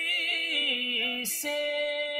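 Unaccompanied devotional singing of an Urdu naat in praise of Medina: a single voice holding long, wavering, ornamented notes, with a brief hiss of a consonant a little past halfway.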